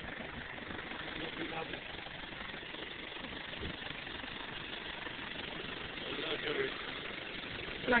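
Faint, indistinct voices over a steady background noise.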